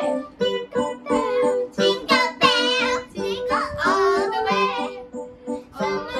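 A young girl singing a song with piano accompaniment, her sung notes wavering over steady held piano notes.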